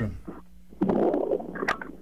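A muffled, rumbling noise coming over a telephone line as a listener's call is put through, lasting about a second from just under a second in, with a faint click near its end.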